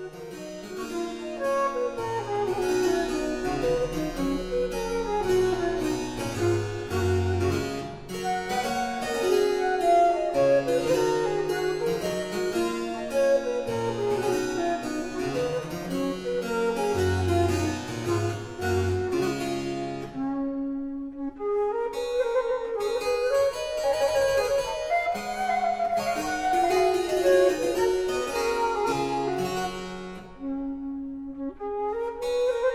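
Harpsichord and recorder playing baroque music, the harpsichord's plucked notes running in descending lines under the recorder's melody. About twenty seconds in the music breaks off briefly and a new passage starts with the recorder to the fore.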